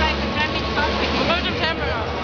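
Background chatter of many voices in a crowded hall, over a steady low hum.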